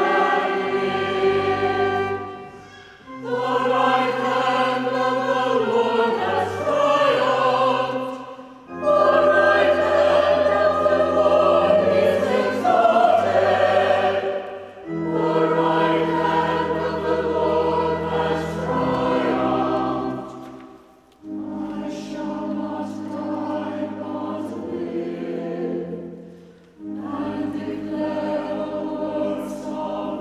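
Church choir singing in parts, most likely the psalm between the two readings, in sustained phrases of about five or six seconds with short breaks for breath between them.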